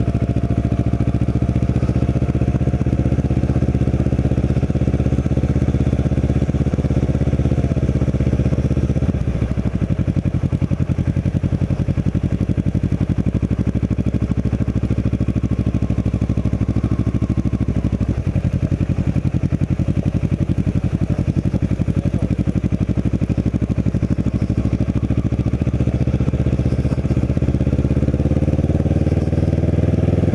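Kawasaki Ninja 650R's parallel-twin engine running at low revs on a slow ride, steady, with a dip in revs about nine seconds in and a rise in pitch near the end.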